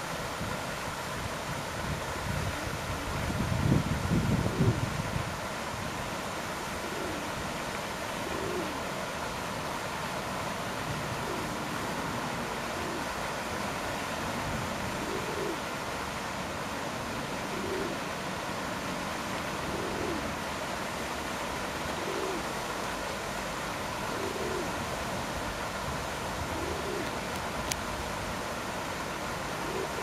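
A bird's low cooing call, repeated about every two seconds, over a steady outdoor hiss. Early on, a burst of wind buffeting the microphone is the loudest sound.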